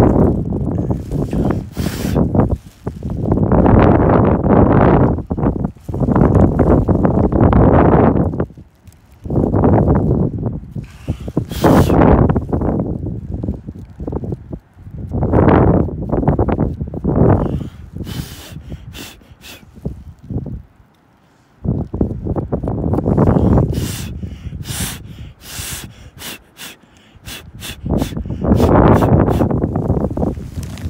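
Shale chips and ammonite fragments rustling and scraping against a plastic bag as a gloved hand packs them in, in repeated bursts of a second or more. Near the end come a run of quick sharp clicks as the chips knock together.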